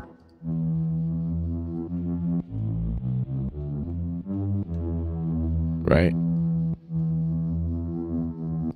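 Native Instruments Low End Modular software synth playing its Sci-Fi 1964 source: low, held synth notes rich in overtones, with a quick run of shorter changing notes in the middle.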